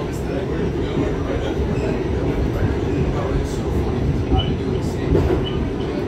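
Steady low rumble of an R68 subway car running at speed, heard from inside the car: wheels on rail and traction motors. A few brief high squeaks come in the second half.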